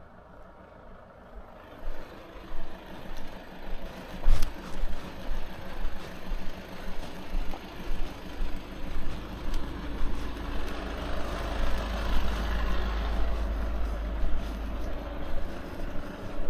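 Footsteps of someone walking on a pavement, about one and a half steps a second, starting about two seconds in, over a low rumble. A vehicle's noise swells in the second half and then fades.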